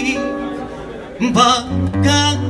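Acoustic guitar playing a tango accompaniment with held notes, and a short sung phrase from the male singer partway through.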